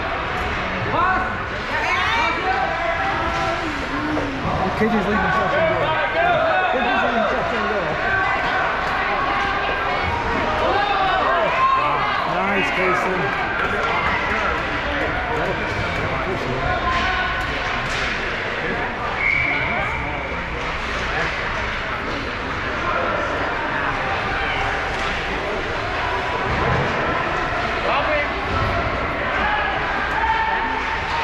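Indoor ice rink during a youth hockey game: a steady background of overlapping voices, no words clear, with scattered sharp knocks of sticks and puck on the ice and boards. A short steady high tone sounds once about two-thirds of the way through.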